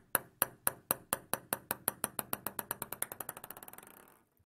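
A table tennis ball dropped onto a hard surface and bouncing to rest: sharp clicks that come quicker and quicker and grow fainter until they fade out near the end.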